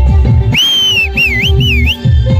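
Dance music with a heavy, repeating drum beat. About half a second in, a loud, high whistle sounds over it: one held note, then two quick swooping whistles.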